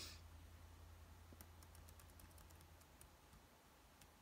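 Near silence with faint, irregular clicking from a computer mouse as a web page is scrolled, over a low steady hum.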